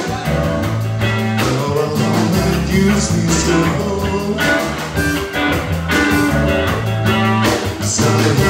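Live blues band playing: electric guitars over a drum kit with a steady beat and a strong bass line.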